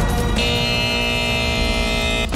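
Opening theme music of a television programme. A long sustained chord comes in about half a second in and is held over a steady low bass.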